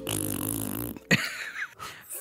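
A low, buzzy held tone that cuts off suddenly after about a second, followed by a click and a short vocal sound.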